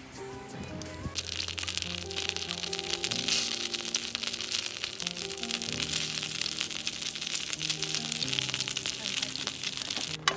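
Background music, with a dense crackling sizzle from about a second in: takoyaki frying in a grill pan on a camp stove.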